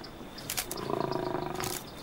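A tiger growling once, a low pulsing growl lasting about a second.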